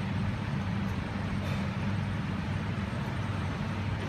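Steady low mechanical hum and rumble, even in level throughout.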